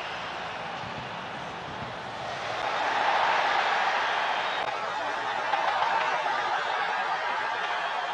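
Stadium crowd noise, a steady din that grows louder about two and a half seconds in.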